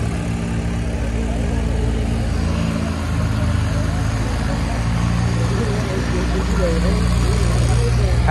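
Diesel tractor engine running steadily at a low, even speed, with faint voices in the background.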